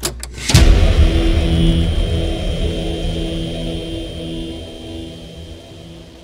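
Intro sound effect for a title card: a sudden loud hit about half a second in, then a low rumbling drone with a steady hum that slowly fades away.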